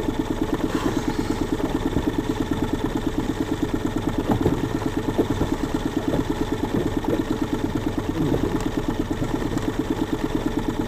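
Small outboard motor running steadily at low trolling speed, with a rapid, even pulsing beat.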